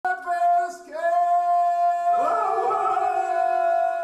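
Ganga, the traditional unaccompanied multi-part folk singing of western Herzegovina, sung by men's voices. One voice holds a high, sustained note, breaking off briefly before one second in. A second voice joins about two seconds in, wavering beneath it in close harmony.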